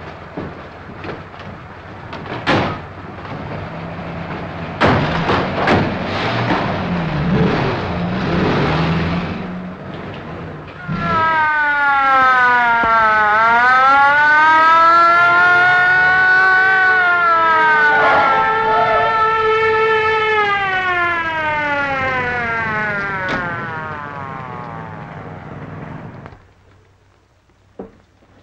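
Car engines running with several sharp knocks, then a police car siren wailing loudly: it dips, climbs and holds high, then winds down slowly and stops near the end.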